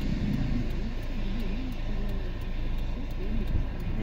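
Steady low rumble of a car idling, heard from inside the cabin, with quiet talk over it.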